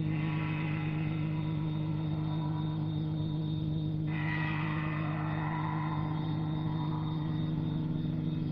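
Sustained electronic drone from a film soundtrack: a steady deep hum with a shimmering upper layer that changes about four seconds in.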